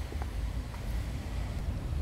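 Low, uneven rumble of wind on the microphone, with faint outdoor background noise.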